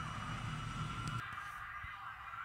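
Faint steady background noise with a low hum, and no distinct event.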